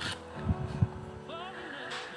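Cooking oil poured from a bottle into an iron kadhai, with a few low thumps from about half a second to one second in, over steady background music.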